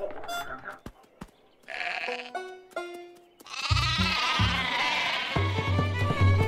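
A cartoon sheep character's short bleat-like exclamation, followed by a lively music score with a strong bass line that starts about halfway through.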